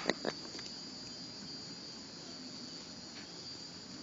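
Insects chirring steadily outdoors in one high, even tone, with two short sharp clicks just after the start.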